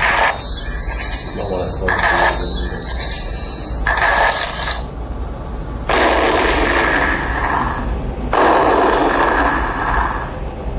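Presentation-software slide-animation sound effects played over the hall's speakers. There are three short noisy bursts in the first five seconds, then two longer ones of about two seconds each.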